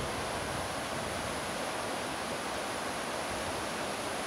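A steady, even rushing noise with no distinct events, holding a constant level throughout.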